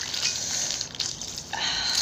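Wet squelching and plastic crinkling as a plastic bag of mud snails is squeezed out into a bowl, the snails and their liquid spilling out, a little denser near the end.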